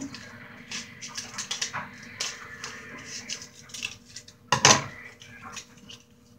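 Scissors snipping and a paper cupcake liner crinkling as it is cut and folded by hand, a string of small, irregular clicks and rustles. About four and a half seconds in comes one loud, short sound.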